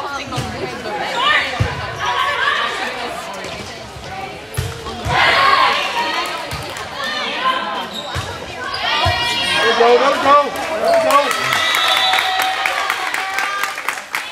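A volleyball being struck several times during a rally: sharp hand-on-ball hits, echoing in a large gym. Spectators and players shout and cheer between the hits.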